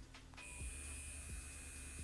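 Electric silicone facial cleansing brush switched on about a third of a second in, its vibration motor giving a faint, steady high-pitched whine.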